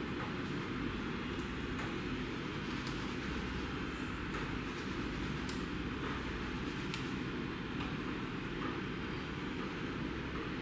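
Steady low rumbling background noise with a few faint light clicks scattered through it.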